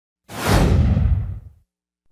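A whoosh sound effect: a loud rushing swish that starts suddenly about a quarter second in, its high hiss fading first, and dies away within about a second and a half.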